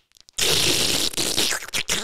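Wet, crackly sucking and slurping noises made with the mouth close to a microphone, imitating a baby suckling. They start about a third of a second in and run for about a second and a half.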